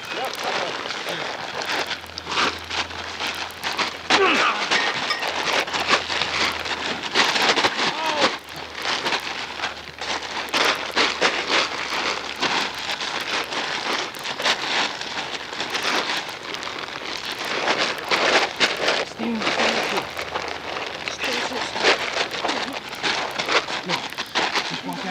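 A plastic tarp crinkling and rustling under scuffling bodies, with many short crackles throughout and shouting voices now and then.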